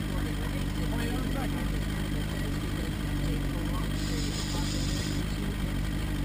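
Outboard motor on a small fishing boat running steadily at trolling speed, an even low drone.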